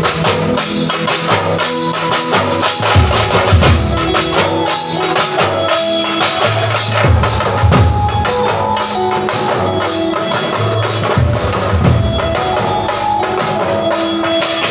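A Marathi street band playing: dense, loud drumming on large marching drums carried by the players, with a melody of held notes over it.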